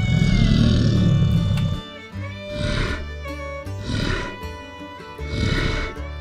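Dinosaur roar sound effect: one long roar lasting about two seconds, then three shorter roars, over background music.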